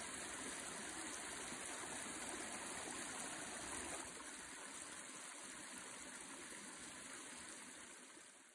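Water running down a wet rock face in a small cascade: a faint, steady rushing and splashing. It drops a little in level about halfway through and fades out at the end.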